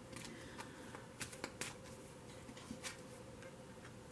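Tarot cards being handled: a card drawn from the deck and laid onto the spread, heard as a handful of faint, short clicks and card-on-card slides.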